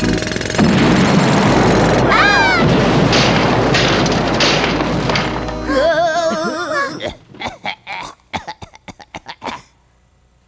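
Loud comic sound effects of power tools working behind a wall: a dense noisy din with whistling, wavering glides in it. It stops about seven seconds in, and a quick, uneven run of sharp knocks like hammering follows.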